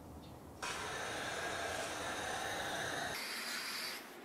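Garden hose spraying water onto the coils of an outdoor air-conditioner condenser unit, rinsing off dirt: a steady hiss of water that starts suddenly about half a second in.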